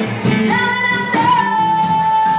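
Live blues band: a woman singing, holding one long high note from about half a second in, with a small lift in pitch, over drums, bass and guitar.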